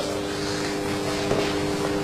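Steady background hum with a few held low tones over an even hiss, room or recording-equipment noise.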